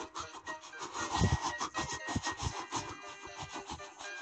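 Battery-powered Trackmaster-style toy train running along its track: a rasping motor and wheels with a dense, uneven clicking over the rails. Background music runs underneath.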